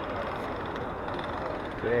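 Steady outdoor city street background noise, an even hum of distant traffic and crowd. A man's voice begins right at the end.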